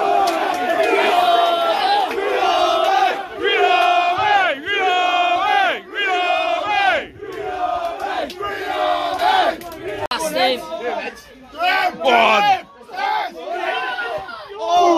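Football supporters chanting and shouting together in celebration, loud repeated rhythmic phrases from many voices. The chanting thins into gaps after about ten seconds in.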